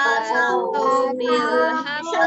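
Children and a woman chanting a short Quran surah together in a melodic recitation, heard through video-call audio. The voices carry long held phrases with a brief pause for breath under a second in.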